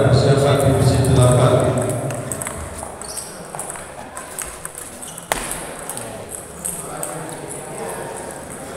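Table tennis balls clicking off paddles and tables in a busy hall, with a man's amplified voice over the first two seconds and a sharper knock about five seconds in.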